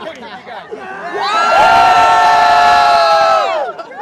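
Crowd of fans cheering: scattered overlapping voices at first, then just over a second in a loud group shout held on steady pitches for about two seconds, sliding down and dropping away near the end.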